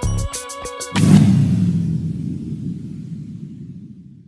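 Electronic background music with a steady beat, which ends about a second in on a deep boom. The boom rumbles and slowly fades out.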